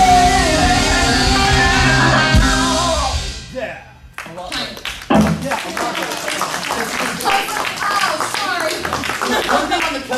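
A live band with drums and electric guitars and a female singer hold a big final chord, which dies away about three and a half seconds in. Applause and voices follow.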